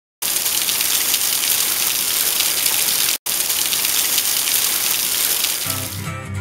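Waterfall spray falling onto rocks, a steady loud hiss of water that cuts out for an instant about three seconds in. Guitar music starts just before the end.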